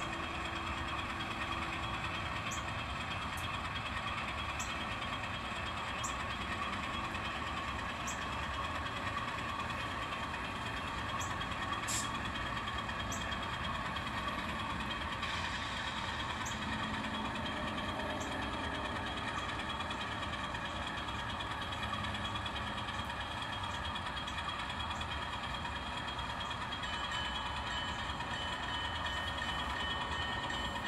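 N scale model freight train moving along the track: a steady mechanical drone with several held tones, broken by small sharp ticks every second or two.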